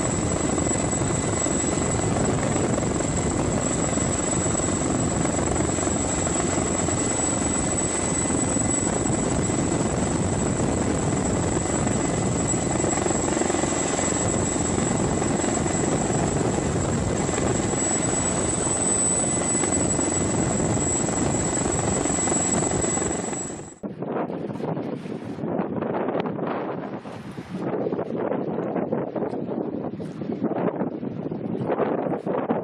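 Helicopter hovering close by: a steady, dense rotor and engine noise with a constant high-pitched whine. About three-quarters of the way through it cuts off suddenly and gives way to a quieter, uneven rushing noise.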